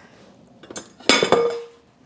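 A glass bowl clinks against hard surfaces as it is taken up: two sharp knocks just over a second in, the first followed by a short ringing tone.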